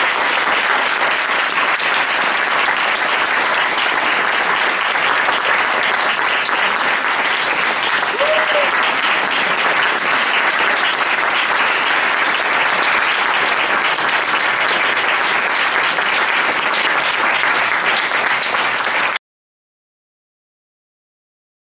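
Audience applauding steadily, a roomful of hand claps that cuts off abruptly about a second before the end.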